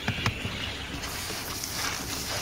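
Numatic Henry canister vacuum running steadily, its hose nozzle working over car carpet and seat fabric. There are a couple of light knocks from the nozzle at the start, and the hiss turns brighter about halfway through.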